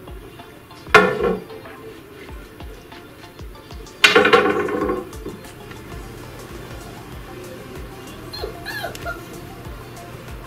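A puppy barks twice during play: a short bark about a second in, then a longer one a few seconds later.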